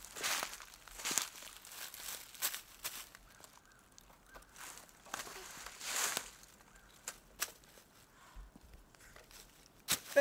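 A small child's footsteps crunching through dry fallen leaves: irregular steps with a handful of louder crunches.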